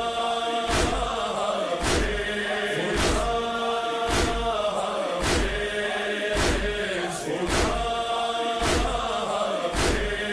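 Mourners chanting a noha, a lament, in unison over the rhythmic beat of matam: hands striking chests together, about one heavy stroke every second.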